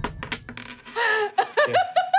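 A few sharp clicks, then a person giggling in a quick run of high, short 'ha-ha' bursts that begins about halfway through and carries on.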